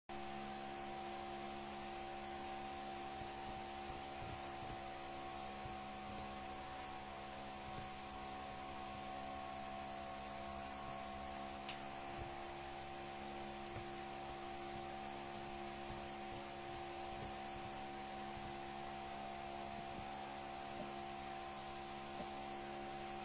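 Steady hum made of a few fixed tones over an even hiss, typical of a fan or air conditioner in a small room. About halfway through comes a single sharp tap as a finger touches the phone.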